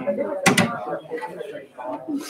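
Several people talking at once, their words not picked out, with a single sharp knock about half a second in.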